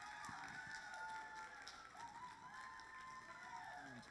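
Faint audience applause with some cheering voices.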